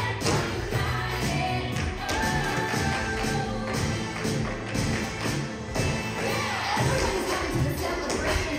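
Music with vocals plays steadily while tap shoes strike a stage floor in many quick, irregular taps over it.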